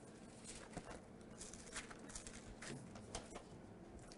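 Faint, scattered rustles and soft ticks of thin Bible pages being turned while people look up a passage.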